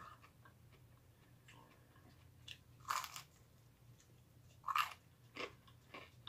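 Toasted garlic bread being chewed close to the microphone: a few short, crisp crunches, the clearest about three seconds in and again just before five seconds.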